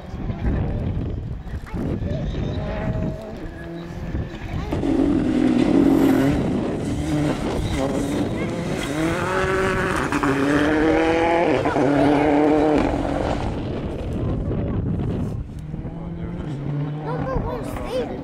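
Rally car engine driven hard, pitch climbing and dropping repeatedly as it changes up through the gears, loudest from about five to thirteen seconds in, then fading as the car moves away.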